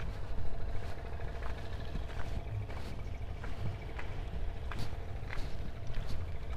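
Wind rumbling on the microphone over a faint, steady engine hum from a distant motor, with a few scattered light clicks.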